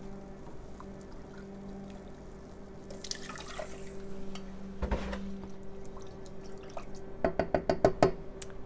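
Milk poured from a plastic gallon jug into a pan of hot butter-and-flour roux, a soft liquid pour, then a knock as the jug is set down about five seconds in, and quick clicks of a utensil stirring in the pan near the end.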